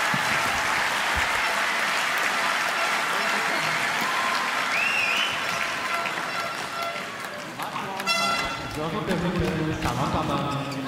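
Indoor arena crowd applauding the match-winning point at the end of a badminton match, the clapping dying away after about six seconds; voices come in near the end.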